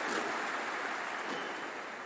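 Audience applause in a large arena: an even, steady clatter of clapping that slowly fades.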